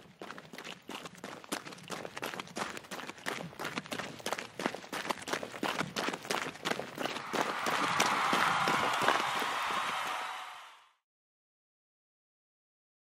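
Running footsteps sound effect: quick steps growing louder, then a denser, louder rush of noise for the last few seconds that stops abruptly.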